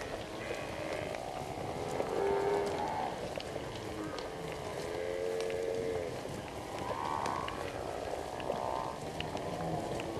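A herd of African buffalo calling: about five drawn-out, low, moo-like calls, some overlapping, spread through the few seconds.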